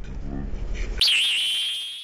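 A voice over a low rumble, cut off abruptly about a second in by a loud, high-pitched edited-in sound-effect tone that wavers at first, then holds steady and fades.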